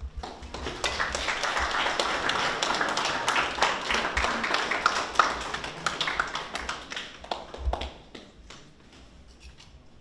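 An audience claps. The applause builds quickly, holds for about seven seconds, then dies away into a few scattered claps.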